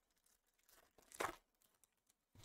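Foil wrapper of a trading-card pack torn open by hand: one short, sharp rip a little over a second in, with light crinkling of the wrapper before and after it.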